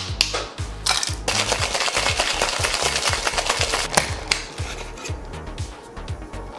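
Ice cubes clinking into a stainless-steel Boston shaker tin, then the sealed shaker shaken hard with ice rattling inside for a few seconds before it eases off. Background music plays underneath.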